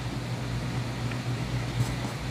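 Steady low hum with a faint hiss.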